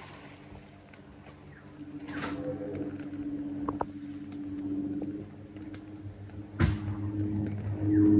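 A steady engine hum, getting louder about two seconds in and again near the end, with a sharp click shortly before the end.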